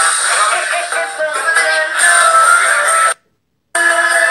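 A woman sings karaoke into a handheld microphone over a backing track. The sound cuts out completely for about half a second near the end, then the singing and music come back.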